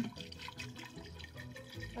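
Red wine poured from a bottle into braising liquid in a stainless steel pressure-cooker pot, a soft liquid splashing, under quiet background music. A short click sounds right at the start.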